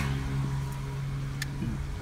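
Steady engine hum and road rumble heard inside a moving car's cabin, with a faint click about one and a half seconds in.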